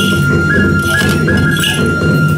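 Hana Matsuri dance music: a bamboo flute holding one long high note that steps up briefly a few times, over a steady low drumming accompaniment, with short bursts of bell jingling.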